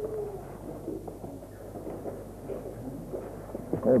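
Quiet room with a steady low hum and faint, scattered soft voice sounds; a short, soft cooing vocal sound right at the start.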